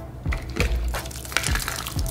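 Water squirting and splashing out of a water balloon hidden in a Pringles can as the lid is pulled off, with several short sharp clicks from the can and lid.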